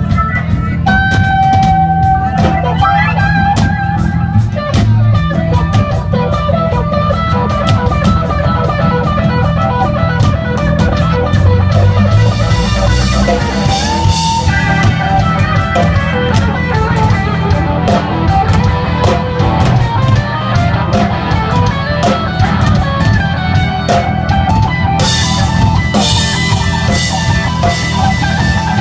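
Live rock band playing an instrumental passage with no singing: guitar lead over a steady drum-kit beat, loud throughout.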